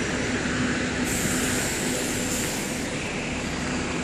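Double-decker bus engine running with a steady low drone amid street traffic; a high hiss joins about a second in and dies away before three seconds.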